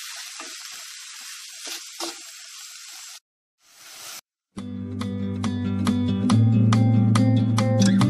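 Spinach and onion filling sizzling in a pot while being stirred, a steady frying hiss with small scraping clicks, for about three seconds. It cuts off, and about four and a half seconds in, louder plucked guitar music with a steady rhythm begins.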